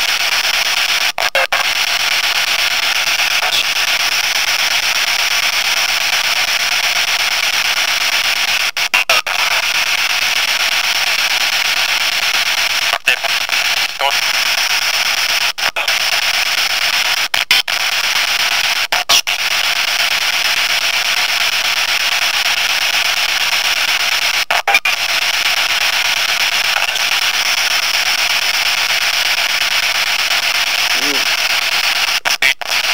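Loud, steady static hiss, like radio noise, cut by brief dropouts about seven times. The on-screen captions read faint voice-like fragments in it as spirit words ("Just be grateful").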